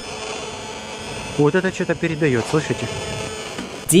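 Electromagnetic detector held against a cell tower sector antenna, turning its radio emissions into a steady electrical buzz and hiss with several fixed tones. A voice talks over it briefly in the middle.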